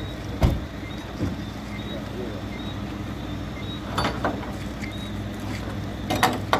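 Tow truck engine running steadily at idle, with a faint high beep repeating about twice a second. A few sharp knocks cut through it: the loudest about half a second in, then a smaller one, and a quick pair near four seconds.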